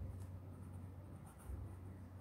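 A pen writing on squared exercise-book paper: faint, intermittent scratching as the tip forms handwritten words, over a steady low hum.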